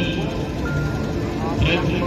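Amplified devotional singing and music of the aarti ceremony, with bells ringing in a high jangle at the start and again near the end.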